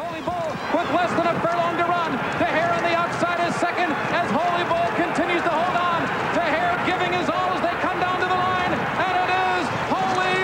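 A man's voice talking fast and almost without pause, a track announcer calling a horse race as it runs.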